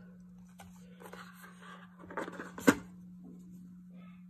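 Handling noise of a cardboard gift box and its plastic tray as a cordless body trimmer is lifted out: soft rustling and scraping, a small click about half a second in and a sharp click near the end, the loudest sound.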